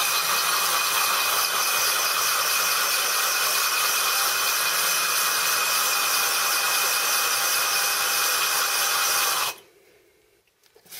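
Cordless drill turning a 12 mm diamond-coated bit against the glass of a wet wine bottle: a steady high grinding with a thin whine. It cuts off suddenly near the end as the bit comes off the glass.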